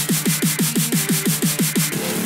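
Dubstep build-up: a synth note sliding down in pitch, repeated about six times a second with a hissing noise hit on each repeat, breaking off just before the end.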